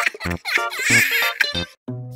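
Comedy background music with rapid giggling laughter laid over it. The laughter breaks off near the end, and a new phrase of plucked music notes begins.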